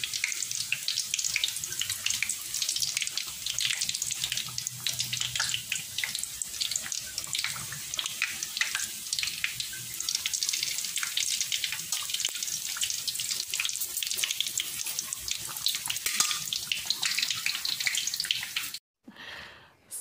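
Pork belly deep-frying in hot oil in a wok: a steady dense sizzle full of crackling pops, which cuts off suddenly near the end.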